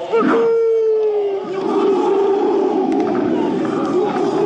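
Film soundtrack of a massed body of Zulu warriors: their rhythmic chant breaks into one long held cry, then, about a second and a half in, a dense roar of many men yelling as they charge into the attack.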